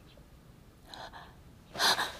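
A woman's sharp, loud gasp near the end, as she jerks upright in bed, preceded about a second in by two faint breaths.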